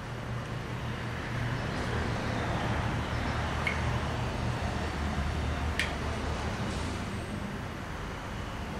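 Lawn mower engine running steadily, a low drone, with a couple of faint small clicks.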